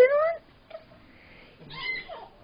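A high-pitched voice: a short rising call right at the start and another brief call near the end, with quiet in between.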